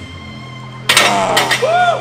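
Background music, then about a second in a sudden burst of men shouting and cheering as a lifter finishes a heavy barbell bench press rep.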